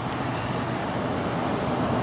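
Steady road and wind noise inside a moving car.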